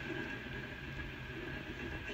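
Steady low rumble with a faint hiss above it, the background ambience of the film's soundtrack.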